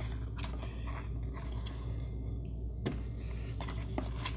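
Hand-pulling of Cat5 data cable through a hole in drywall: faint scraping and handling noise as the cable binds in the wall, with one sharp click a little under three seconds in, over a steady low hum.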